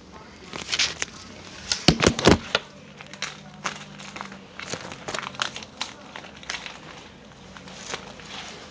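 Handling noise of a phone microphone being rubbed by a hand and fabric: crackling and rustling, with a few sharp knocks about two seconds in.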